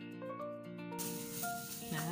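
Background music with steady held notes; about a second in, the crackly rustle of a thin plastic bag being pulled open over a load of dried beans joins it.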